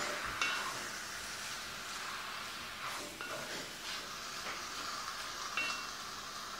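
Chunks of beef and spices sizzling in oil in a heavy Dutch oven while being stirred with a wooden spatula. The frying sizzle is steady, with a few light scrapes and knocks from the spatula against the pot.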